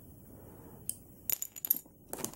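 Small hard plastic action-figure accessories clicking and clinking as they are handled and set down: one click about a second in, then a quick cluster of light clicks.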